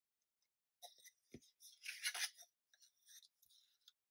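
Faint handling noise of thin plywood pieces on a cutting mat: a light tap as a piece is set down about a second and a half in, then a brief scratchy rustle and a few small clicks as the pieces are pressed and slid together.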